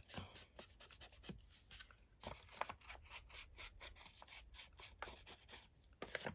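Faint, quick, irregular scratchy rubbing of a small round ink blending tool dabbed and stroked along the edges of a folded paper envelope pocket to ink them.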